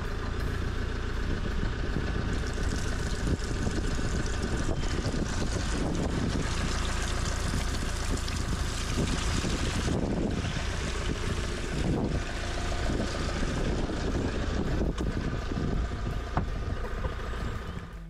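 Grey waste water gushing from an Autotrail Imala 736 motorhome's outlet pipe and splashing onto a metal drain grating, a steady rush, over a steady low rumble.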